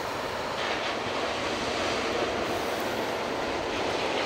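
Steady rushing noise of ocean surf breaking along a beach, mixed with wind buffeting the microphone.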